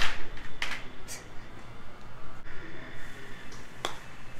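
A golf club striking the ball in a short chip shot off a driving-range mat: one sharp click near the end. A few brief rustling noises come in the first second, the first the loudest.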